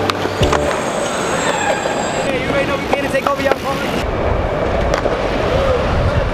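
Skateboard wheels rolling over concrete, a steady loud rumble, with a few sharp clacks of boards hitting the ground; voices chatter in the background.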